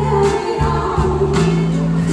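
Live pop-soul song: a female lead singer with a band accompaniment, the voice and instruments holding long sustained notes over a steady bass.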